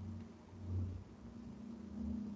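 Faint low hum of background room tone, with no distinct events.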